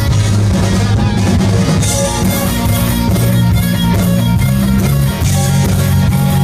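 Live hard rock band playing an instrumental passage: electric guitar over bass and drums, loud and steady.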